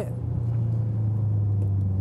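Drift car's engine heard on board, a steady low drone as the car powers out of a corner.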